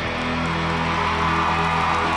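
Live rock band playing, with electric guitars, bass and drums holding a sustained chord at a steady level.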